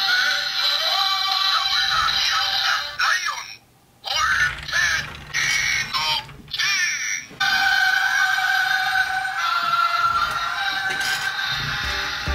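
Electronic music with a synthesized singing voice, thin and tinny with little bass, breaking off for a moment a few seconds in and again briefly twice before running on.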